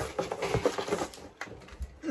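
Cardboard shipping box being opened by hand: flaps and crumpled brown packing paper rustling and crackling, a quick run of crackles in the first second or so, then quieter handling.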